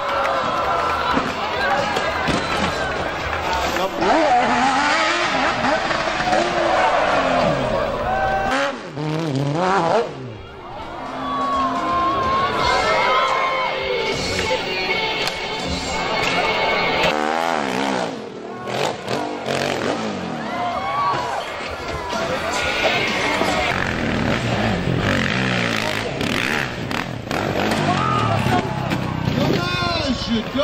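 Off-road motorcycle engines revving and cutting in and out on a steep hill climb, mixed with spectators' shouting and voices.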